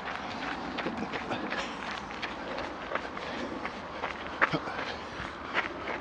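Running footsteps on a gravel path, a steady patter of small crunches with a couple of louder ones near the end.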